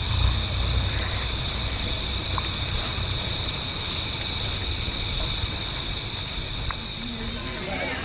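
Insects, likely crickets, chirping in a steady high-pitched rhythm of about two pulsed chirps a second, over a low steady rumble of outdoor ambience.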